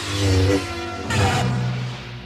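Dramatic film-trailer music with held notes, punctuated by two loud noisy swells, one at the start and one just past the middle.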